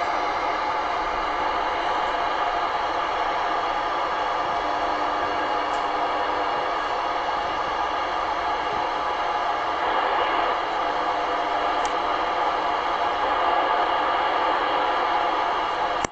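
Steady AM static hiss from a President Jackson II CB radio receiving channel 19 (27.185 MHz AM), with no intelligible station coming through. A faint low tone rides in the noise through the middle.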